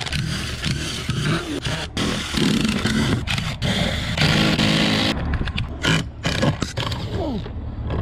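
18V cordless impact driver hammering as it backs screws out of weathered teak, running in stretches through the first five seconds or so. After that come several sharp knocks and cracks as the loosened wood is worked free.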